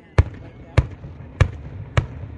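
Aerial fireworks shells bursting: four sharp bangs, evenly spaced a little over half a second apart.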